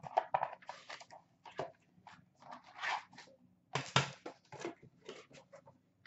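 Small white cardboard box being opened and its contents handled: a run of short, irregular crinkles, scrapes and taps of cardboard and packaging.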